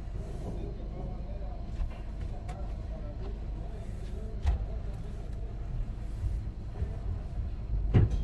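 1970s Sherman car wash tunnel equipment running around the car, heard muffled from inside the cabin as a steady low rumble with a few light knocks against the body.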